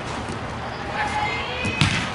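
Open-air ambience of a soccer game with faint distant shouts from players, then a single sharp thump of the soccer ball being struck near the end.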